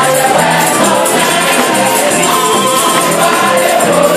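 Live gospel praise singing: a woman lead singer and a choir of women singers into microphones over band accompaniment, with percussion keeping a steady beat.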